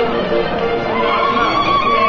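A crowd singing a Basque song together. From about a second in, one high voice holds a long wavering note over the group.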